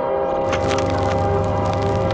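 Background music with sustained tones, overlaid from about half a second in by a dense burst of crackling, a static-like transition effect.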